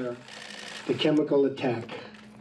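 A rapid flurry of camera shutters clicking, densest in the first second, with a man's voice speaking briefly in the middle.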